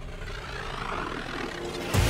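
A soundtrack riser: a whooshing noise that swells steadily louder, leading straight into the music's beat at the end.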